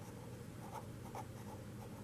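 Felt-tip marker writing on paper: a few short, faint strokes as a word is written out by hand.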